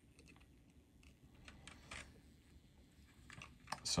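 Faint, irregular crackling and small clicks as a soldering iron heats copper desoldering braid pressed onto a solder eyelet, wicking the solder off to free a component board.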